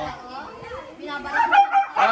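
Husky 'talking': a drawn-out, wavering woo-like call that swells about a second in and is loudest just before the end.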